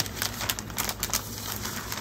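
Sheets of scrapbook paper being handled and laid down: a run of irregular light clicks and taps, several a second.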